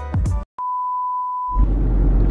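Upbeat intro music cuts off about half a second in; after a short silence a single steady electronic beep sounds for about a second, then gives way to the low rumble of a moving car's cabin.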